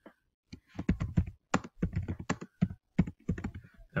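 Typing on a computer keyboard: a quick, irregular run of keystrokes that starts about half a second in.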